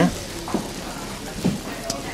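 Soft, steady crackling hiss of food cooking on a gas hob, with two faint knocks.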